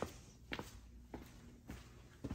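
Footsteps walking across a tile floor, four faint, evenly spaced steps at about two a second.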